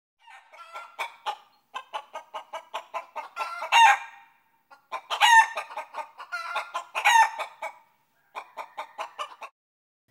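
A hen clucking in quick runs of short calls, with three louder drawn-out squawks, added to the video as a sound effect.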